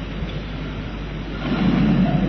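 Steady hiss and low hum of a lecture-hall recording, with a louder low murmur swelling in near the end.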